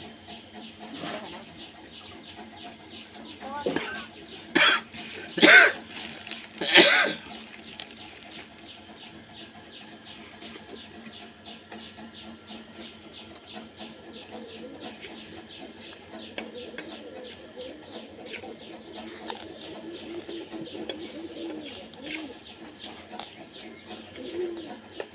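A person coughing three times in close succession, about four to seven seconds in, over a faint steady background. Faint bird calls come near the end.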